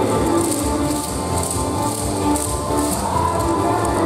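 Upbeat yosakoi dance music playing loud, with the dry wooden rattling clack of many dancers' naruko clappers shaken in time, in short bursts about every half second.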